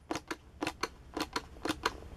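Plastic foaming pump dispenser being pumped over and over, each stroke giving a pair of light clicks, about two strokes a second, as foam squirts out.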